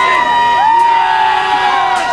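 Parade crowd shouting and cheering, many voices overlapping in long held calls.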